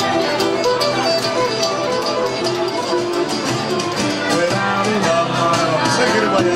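Live folk dance band playing a quick tune, a fiddle carrying the melody over a steady beat.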